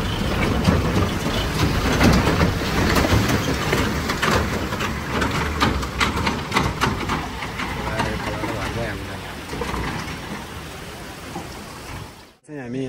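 A loaded Tata truck's diesel engine running as the truck drives through a shallow stream ford, with water splashing and stones crunching under the tyres. The sound fades toward the end as the truck pulls away.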